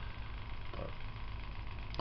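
Steady low hum of a running electric box fan, with a single short spoken word about a second in.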